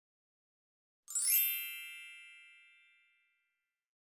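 A single bright synthetic chime, an intro sound effect, strikes about a second in with a quick upward shimmer and rings out, fading away over about two seconds.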